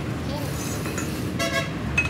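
A short vehicle horn toot about one and a half seconds in, over steady road-traffic noise.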